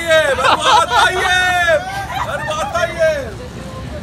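Several people's voices talking and calling out over crowd babble, easing off near the end.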